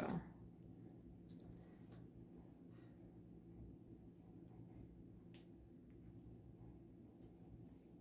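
Near silence: a low steady hum of room tone with a few faint, brief clicks and ticks as fingers pick at masking tape on watercolour paper.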